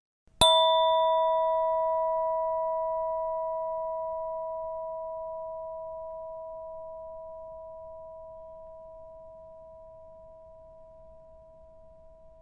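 A bell-like meditation chime struck once, about half a second in, then ringing on with a long, slowly fading tone that is still faintly sounding at the end.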